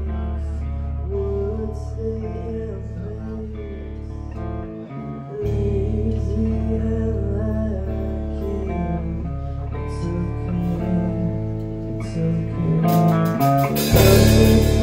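Live rock band playing an instrumental passage: electric guitar lines over bass. The bass drops out for a moment about five seconds in, and cymbals and drums crash back in near the end.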